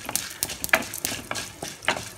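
A spatula stirring dried red chillies and lentils frying in oil in a steel kadai, scraping against the metal about four times over a steady sizzle.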